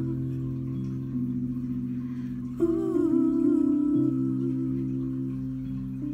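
Piano chords held under a woman humming a wordless melody. About two and a half seconds in, a new, louder chord enters with a held, wavering vocal note.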